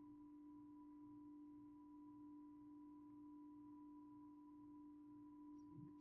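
Near silence: only a faint steady electrical hum from a poor-quality laptop microphone.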